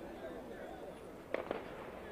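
Faint open-air ambience at a football pitch, with distant voices. Two sharp knocks come close together about a second and a half in.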